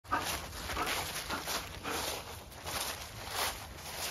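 Footsteps through dry fallen leaves on grass: an uneven run of rustling steps, roughly two a second.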